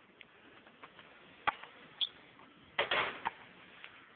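A few sharp knocks of a basketball bouncing and striking the hoop on a dunk, the loudest clump of knocks about three seconds in.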